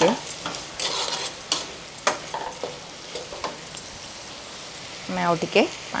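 Potatoes and masala frying with a steady sizzle in a black wok, while a steel spatula stirs and scrapes the pan with a few sharp strokes in the first couple of seconds.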